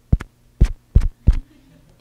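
Microphone being tapped to test it: about five thumps in the first second and a half, the first two close together. A faint low hum runs underneath.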